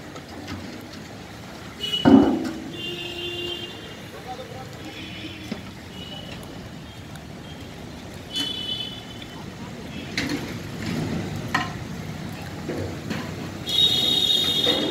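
Outdoor street ambience of a large wood-fire cooking site: background voices and general street noise, with one sharp knock about two seconds in and short high squeaky tones coming and going.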